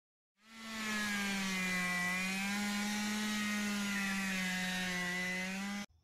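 Small two-stroke scooter engine revved hard and held at high revs in a burnout, a steady high-pitched note with a slight waver. It fades in about half a second in and cuts off suddenly just before the end.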